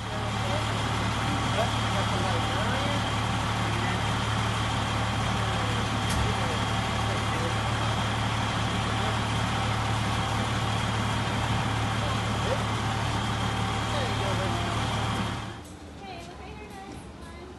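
Fire engine's diesel engine running with a steady low drone that holds an even pitch and level, then cuts off shortly before the end.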